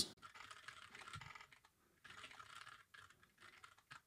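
Faint typing on a computer keyboard, in two quick runs of keystrokes with a short pause between them, as a line of code is entered.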